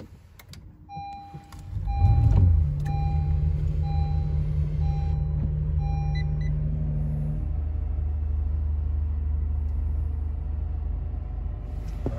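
A 2019 Acura NSX's twin-turbo V6 hybrid powertrain being push-button started: a string of about six dashboard chimes, then the engine fires about two seconds in with a brief flare and settles into a steady idle, its tone dropping about seven seconds in.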